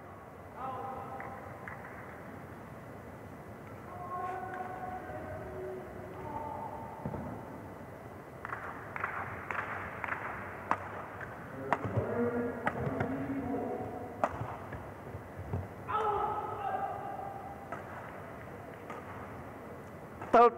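Badminton rally in a large hall: sharp racket strikes on the shuttlecock, thickest about halfway through, among short pitched sounds from players and the hall.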